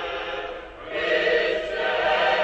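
Choir singing Orthodox church chant in sustained chords. One phrase fades, and a fuller, louder chord comes in about a second in.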